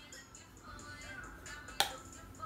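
Pop music playing with a light steady beat, and one sharp finger snap near the end.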